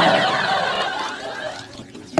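Studio audience laughing: a swell of laughter that is loudest at the start and fades away over about two seconds.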